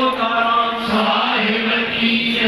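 Devotional chanting by voices in unison, held on a steady, near-constant pitch.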